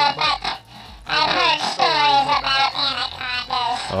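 A comic elf character's voice babbling unintelligible nonsense in reply to a question, with a short pause about a second in.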